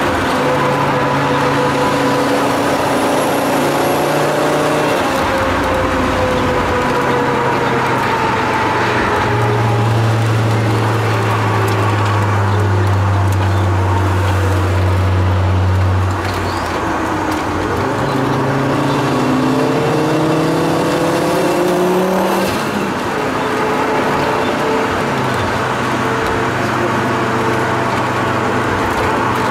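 Turbocharged five-cylinder engine of a 550+ hp Volvo 850 T5R, heard from inside the cabin and pulling hard on track, its note rising and falling with the throttle. A steady deep drone in the middle breaks off about sixteen seconds in, climbs again, and dips once more a few seconds later.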